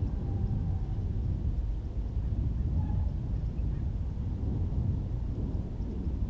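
Wind buffeting the microphone, an irregular low rumble, with a brief faint high note about three seconds in.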